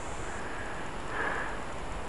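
Steady outdoor background hiss, soft and even, with a faint brief tone about a second in.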